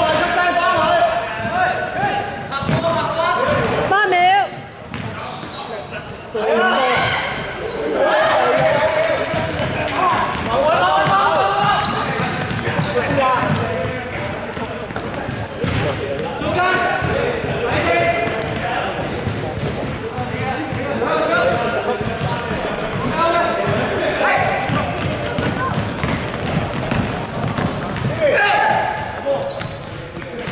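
Basketball game in play: the ball bouncing on a wooden court amid people's voices calling out, in a large sports hall.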